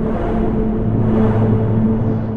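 ASM Hydrasynth sounding its dark ambient 'Mayham' patch, played from its pads: a steady low drone of held notes under a rushing noise layer that swells to its loudest about a second and a half in, then eases.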